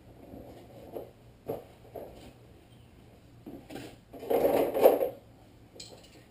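A few light knocks and clunks, then a louder rumbling scrape lasting under a second, fitting a mechanic's creeper rolling out over a concrete garage floor.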